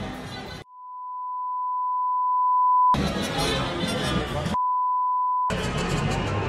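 Music breaks off for a steady electronic beep, one pure tone that swells in loudness for about two seconds. The music cuts back in, the beep returns for about a second past the middle, and the music resumes.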